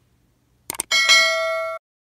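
Subscribe-button animation sound effect: two quick clicks, then a bright notification-bell ding that rings for about a second and cuts off suddenly.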